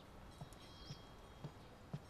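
Soft, even footsteps of a person walking, about two steps a second, with faint high bird chirps in the background.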